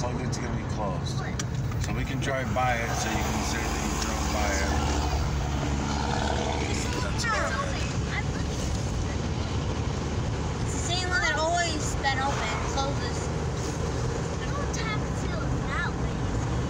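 Steady low rumble of a moving car's engine and road noise heard from inside the cabin, with indistinct voices now and then.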